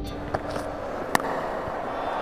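Cricket stadium crowd noise in a television broadcast, with a sharp crack just after a second in.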